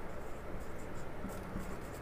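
Whiteboard marker writing on a whiteboard: a series of short, faint strokes as the figures are drawn.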